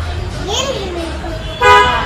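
A vehicle horn sounds about one and a half seconds in: a loud, steady two-tone honk, after a short stretch of voices.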